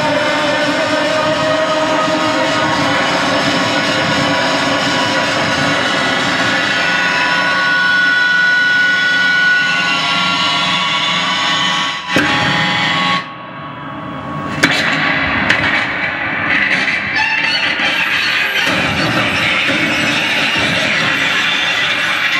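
Live harsh noise music from electronics: a loud, dense wall of distorted noise laced with shifting whistling tones. About thirteen seconds in it drops suddenly to a duller, quieter level for about a second, then a couple of sharp cracks and it builds back up.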